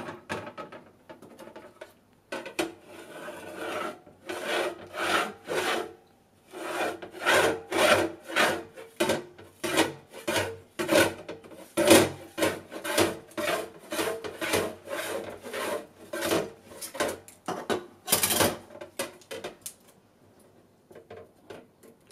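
A clear plastic Lomo developing-tank spiral, turned by its centre knob, rasps over and over as 16mm film is wound back onto it: short strokes about two a second that stop near the end.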